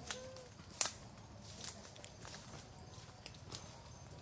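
Quiet forest ambience with a handful of short, sharp clicks, the loudest about a second in.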